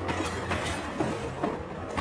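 Passenger train carriage running on the rails: a low rumble with irregular clicks and knocks from the wheels and carriage fittings.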